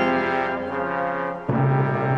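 Break music: a held chord fades a little, then about one and a half seconds in a new passage cuts in abruptly with a low, sustained chord.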